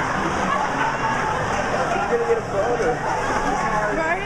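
Crowd of audience voices talking and calling out over one another, a steady babble.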